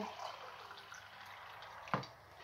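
Water pouring from a plastic filter jug into a ceramic mug, a faint steady trickle, with a short knock just before the end.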